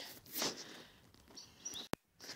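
Faint outdoor background with a short rustle about half a second in and a brief high bird chirp about one and a half seconds in. It ends in a sharp click.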